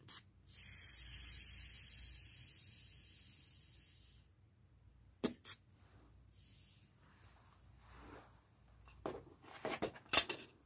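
Air hissing out through the release valve of a manual blood pressure cuff as it deflates. The hiss starts about half a second in and fades away over three to four seconds, and a single click follows about a second later.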